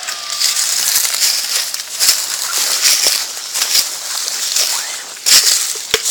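Leaves and undergrowth rustling and crunching close to the microphone as someone moves through brush, in uneven bursts.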